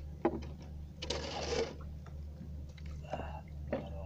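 A small engine runs steadily with a low, evenly pulsing hum. Over it come a sharp knock just after the start, a short rustle about a second in, and another knock near the end.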